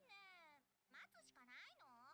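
Very faint, high-pitched voice of an animated character speaking in three short, gliding utterances, nearly at the level of silence.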